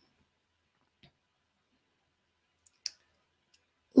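Near silence broken by three short clicks: a faint one about a second in, then two close together about three-quarters of the way through, the second the loudest.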